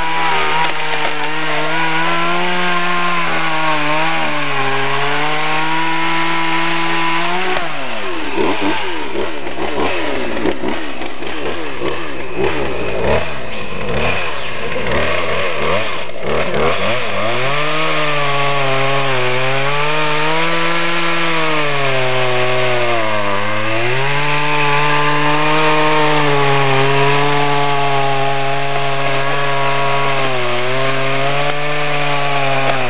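Chainsaw running at high revs. Its pitch dips every few seconds as it bears into wood. For about ten seconds in the middle it drops low and ragged under heavy load, then picks back up to full revs.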